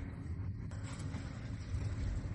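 A vehicle engine idling with a steady low rumble.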